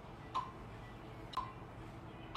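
Metronome clicking evenly about once a second, each a short sharp tick with a brief ring, keeping the beat for a drum lesson.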